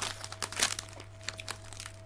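Plastic-foil crisp packet crinkling and crackling as it is handled, in a burst of irregular crackles that dies away in the second half.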